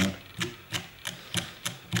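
A fly-tying brush drawn repeatedly through the synthetic angel hair fibers of a streamer held in a vise, short quick strokes about three a second.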